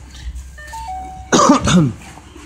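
A man coughing about a second and a half in, the loudest sound here. It comes just after a brief electronic chime of a few short steady tones.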